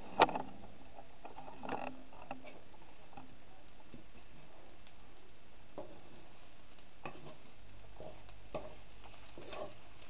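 A metal fork clicking and scraping against a skillet while it works through scrambled eggs: a handful of separate sharp clicks, the loudest right at the start.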